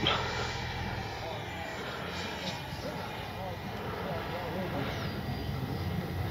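Freewing JAS-39 Gripen RC jet's 80 mm twelve-blade electric ducted fan, heard from the ground as the jet flies high and far off: a steady rushing noise. A thin high whine slides down a little and then holds from about five seconds in.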